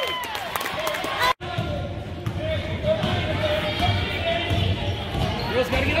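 A basketball being dribbled on a hardwood gym floor, irregular low thuds under a steady murmur of spectator voices, with high girls' shouts at the start. The sound cuts out for an instant just over a second in.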